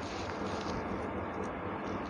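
Steady background noise, an even hiss and rumble with no speech.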